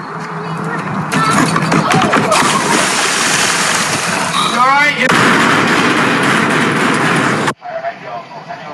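People's voices and loud water splashing in a pool on a water obstacle course, with a quick run of rising squeaky sounds about halfway through. The sound cuts off abruptly near the end.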